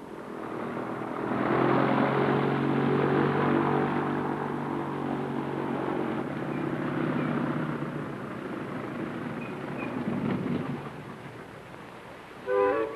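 Airboat's engine and caged propeller running steadily, growing louder over the first two seconds, then slowly fading away toward the end.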